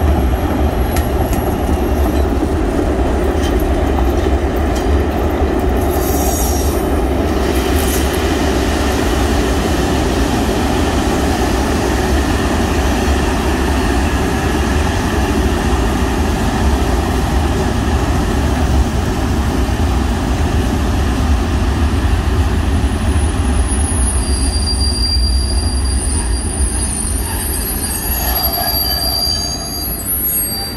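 Freight train rolling slowly past: a Green Cargo electric locomotive followed by a string of tank and sliding-wall freight wagons, with a steady deep rumble of wheels on the rails. Thin, high wheel squeals join in during the second half.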